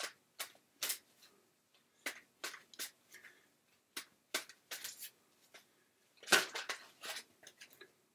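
Tarot cards being shuffled and handled: a string of short, sharp card snaps and rustles at irregular intervals, thickest and loudest about six seconds in.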